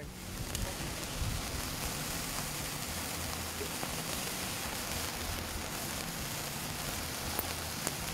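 A hand-held sparkler burning with a steady crackling fizz while its sparks heat the metal tip of a DynaVap VapCap M vaporizer. A couple of faint ticks come near the end.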